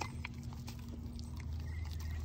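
Siberian husky chewing a piece of cake lightly: a few faint mouth clicks over a steady low background hum, with a short bird chirp near the end.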